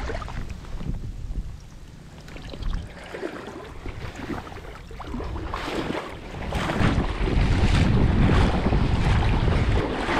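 Wind buffeting the microphone over the swish and splash of someone wading through shallow marsh water; it quietens for a few seconds, then gets louder again from about seven seconds in.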